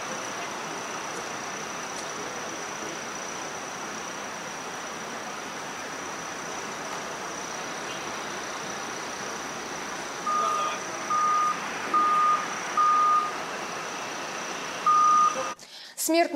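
Steady outdoor background noise, then from about ten seconds in a vehicle's reversing alarm beeping at one pitch: four beeps under a second apart, a pause, and a fifth. The sound cuts off abruptly just before the end.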